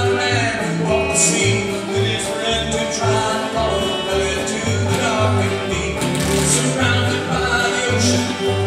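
A small bluegrass-style gospel band playing live: a banjo, an acoustic guitar and an electric guitar over an upright bass plucking a note about twice a second, with a group of voices singing.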